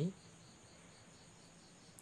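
Faint background chirping of crickets, a high, evenly pulsing trill over a steady high ring.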